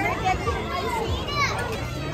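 Many children's voices shouting and chattering at play over a general crowd babble.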